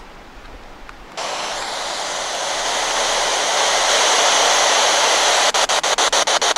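Spirit box (radio-sweep ghost-hunting device) switched on about a second in: loud radio static hiss that swells steadily. Near the end it breaks into rapid, even chops, several per second, as the device sweeps through stations.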